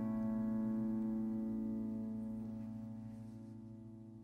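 A final chord on an upright piano ringing out and slowly dying away, with no new notes struck.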